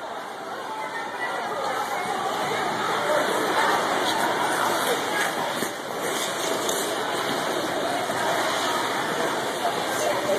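Ice-rink ambience: indistinct voices of skaters over a steady rushing noise, which swells over the first couple of seconds and then holds, with a few brief scrapes in the middle.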